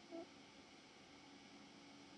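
Near silence: faint steady room hiss, with one brief faint blip just after the start.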